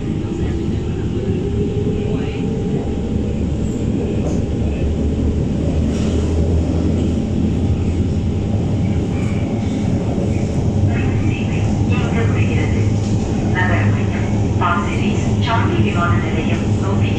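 Inside a Siemens C651 metro train pulling away and accelerating: the traction motors whine, rising in pitch in the first couple of seconds, over the steady rumble of wheels on rail as the train runs on at speed.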